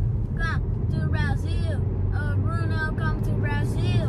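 Steady low rumble of a moving car heard from inside the cabin, with a child's voice talking over it.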